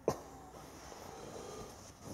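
Quiet room tone inside the van with faint handling noise, opening with one short click.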